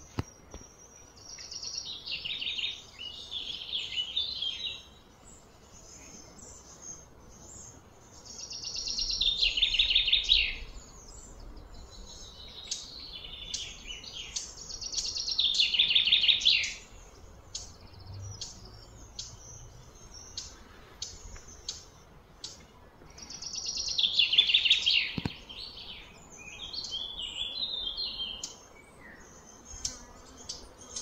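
A songbird singing four loud phrases of rapid, high notes that slide downward, several seconds apart, with scattered short chirps in between.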